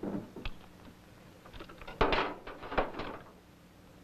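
A few thuds and scuffs of equipment being handled and shifted, the loudest cluster from about two to three seconds in.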